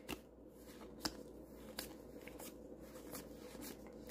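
Faint, scattered clicks of Pokémon trading cards being slid and flipped through by hand, over a faint steady hum.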